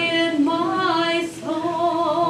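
A woman singing solo, holding long notes that glide between pitches, with a brief breath break about a second and a half in.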